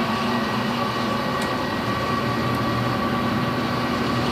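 Steady mechanical hum and whir of running machinery, holding a few fixed tones at an even level throughout.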